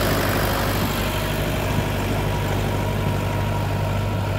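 T-40AP tractor's air-cooled four-cylinder diesel running steadily at close range as it tows a rail drag over ploughed soil.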